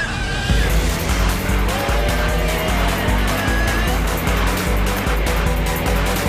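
Commercial soundtrack music with a pounding beat, mixed with car sound effects: an engine revving and tyres squealing.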